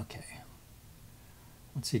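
A man's voice: a brief untranscribed vocal sound at the start, a second or so of faint room tone, then speech resuming near the end.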